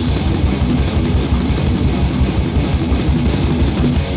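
Heavy metal band recording from a 1989 eight-track demo tape: fast, densely picked electric guitar riffing with bass guitar and drums, played continuously.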